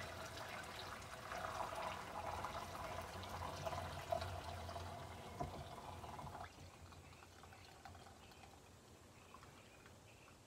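Lemon-sugar water poured from a tilted pot through a plastic strainer into a bowl: a steady splashing pour with a few small knocks, stopping suddenly about six and a half seconds in.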